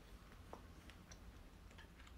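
Faint, sparse little clicks of close-miked eating: wooden chopsticks picking through saucy rice cakes, with quiet mouth sounds, over a low room hum.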